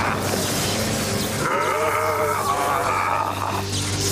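Cartoon sound effects of a downed power line arcing: electric crackling and a steady low hum. In the middle a wavering tone rises over it for about two seconds, with background music.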